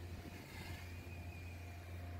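City street ambience: a steady wash of distant traffic with a constant low rumble. A faint thin high tone starts about half a second in and holds.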